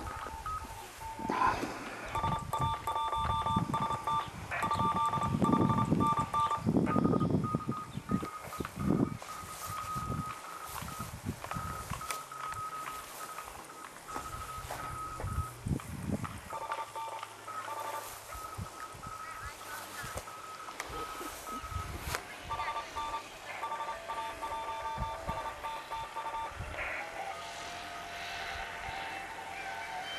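Amateur radio receiver sounding keyed beeping tones at two pitches, switched on and off in runs like Morse code signals, with a wavering tone in the last third. Bursts of low rumbling noise are loudest in the first few seconds.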